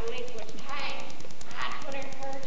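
Actors' voices on stage, distant and indistinct, in short phrases about half a second in and again near the end, over a fast, even ticking in the background.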